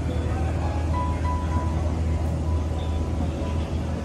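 Airport terminal ambience: a steady low hum under faint background music and distant voices.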